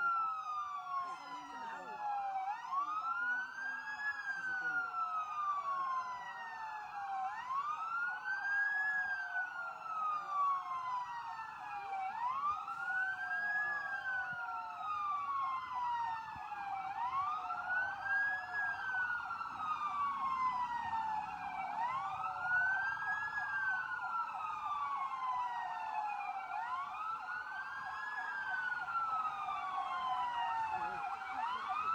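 Emergency-vehicle siren wailing: each cycle rises quickly in pitch and then falls slowly, repeating about every five seconds.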